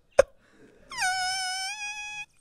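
A man's high-pitched, breathless squeal of laughter. A sharp gasp comes about a quarter second in. About a second in, a long, thin wailing note starts, drops in pitch and then holds steady for over a second.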